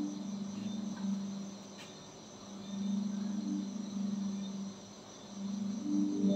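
Quiet ambient background music: a low held tone that fades down twice, over a thin, steady high-pitched layer.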